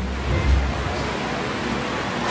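Steady hiss of background noise, with a low rumble strongest about half a second in.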